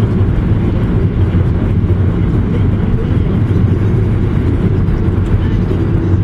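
Steady road and engine noise of a moving car, heard from inside the cabin, heavy in the low end.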